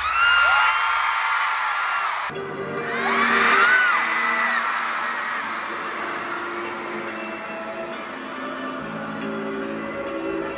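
Concert crowd screaming in high, sliding whoops over pop music from an arena sound system. The sound cuts off abruptly about two seconds in, a fresh wave of screams follows, and then the screams fade while the music carries on.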